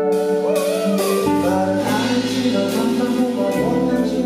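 Live band playing a soul-pop song: guitar chords and a singing voice, with a bass line coming in about a second in.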